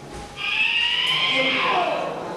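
A high-pitched vocal cry held for about a second and a half, dropping in pitch at the end.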